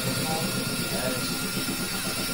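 A dense, steady wash of layered electronic noise and drone with a thin held high tone, and faint fragments of speech mixed in underneath.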